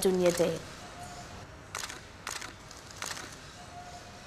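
Faint banquet-hall ambience with three short, sharp clicks spaced about half a second to a second apart.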